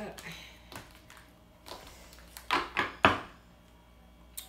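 Tarot cards being handled over a wooden table: a few short card slaps and rustles, the loudest two about two and a half and three seconds in, the second with a light thump.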